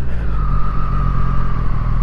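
Triumph Street Triple 765 RS three-cylinder engine running at low revs as the bike rolls slowly, with a steady high whine over it, heard through a microphone inside the rider's helmet.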